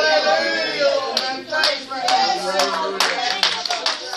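Several voices talking over one another, with sharp hand claps starting about a second in, roughly two a second.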